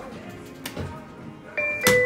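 Elevator car's two-note chime near the end, a higher note followed by a lower one, with a sharp click as the second note begins. The chime signals the car's travel direction as it is about to go up.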